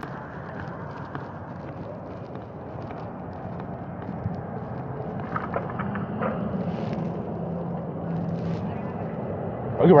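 Police body-camera audio from a road accident scene, played back over a video call. A steady outdoor rumble, with an engine hum coming in during the second half and faint, scattered voices, slowly grows louder.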